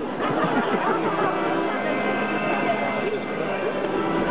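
Indistinct voices talking, with a steady held instrument tone sounding under them, between songs at a live concert.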